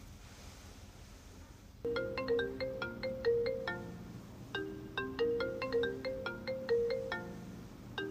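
A marimba-style phone ringtone playing a quick repeating melody, starting about two seconds in and going through its phrase twice with a short break between.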